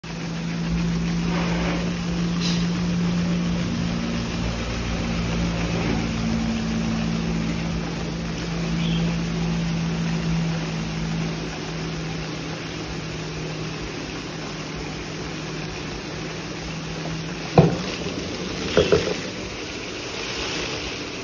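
Homemade drinking-water-bottle washing machine running: a steady motor hum while a 20-litre bottle spins against a stiff brush in soapy water, scrubbing its outside. Near the end, a few sharp knocks as the bottle is handled.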